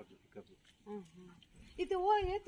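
A donkey starts braying near the end, with a loud, wavering call under quiet talk.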